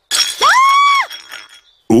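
Cartoon sound effects of a batted ball: a whistling tone as the ball flies off, then a brief breaking, clinking crash as it lands in the house.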